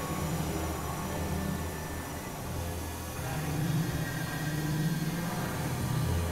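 Experimental electronic drone music: low synthesizer tones that come and go every second or two under a steady noisy, hissing wash.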